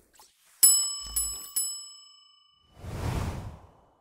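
Metal triangle struck three times in quick succession, the first strike the loudest, each leaving a long bright ring. About a second before the end comes a second-long burst of rushing noise.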